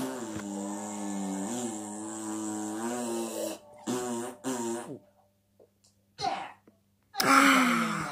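A boy humming one long held note with closed lips, then two short hums. Near the end a loud open-mouthed "aah" follows a sip of drink.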